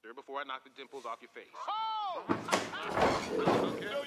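Voices: short spoken syllables, then one high drawn-out vocal cry that rises and falls in pitch, followed by a louder, noisier stretch in the second half.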